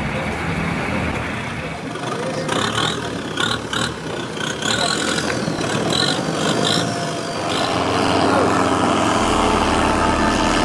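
Busy street-market bustle, then from about seven seconds in the steady drone of a longtail boat's engine running at speed on open water.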